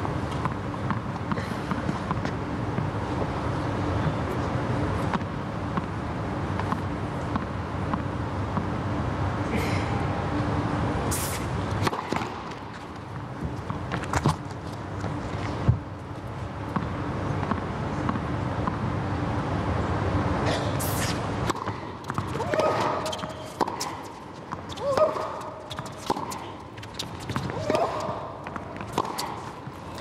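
Indoor tennis arena ambience: a steady crowd murmur, then scattered sharp knocks of the tennis ball, with voices calling out in the last several seconds.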